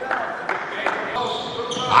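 Handball being bounced on an indoor hall floor: a few short thuds about half a second apart, over the low background of the sports hall.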